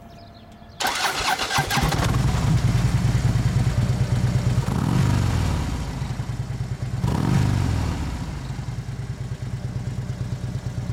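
Harley-Davidson Switchback FLD's air-cooled Twin Cam 103 V-twin being started: the starter cranks for about a second, the engine catches and settles into a lumpy idle. It is blipped twice, about halfway through and again two seconds later, each time rising and falling back to idle.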